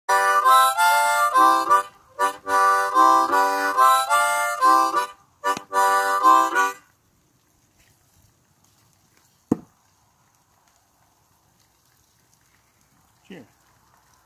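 Blues harmonica playing several short phrases of chords, stopping about seven seconds in. A few seconds later comes a single sharp thunk as a thrown knife sticks into a wooden stump.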